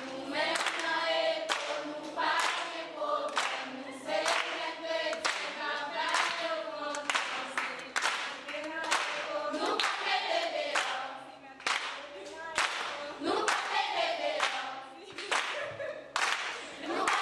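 A youth choir of girls and young women singing together unaccompanied, with hand claps keeping a regular beat.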